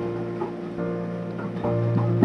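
Background music with sustained notes, lightly tagged as guitar.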